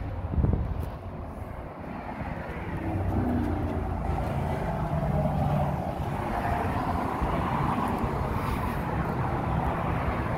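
Road traffic: the engine and tyre noise of a passing motor vehicle, swelling about three seconds in and then holding steady.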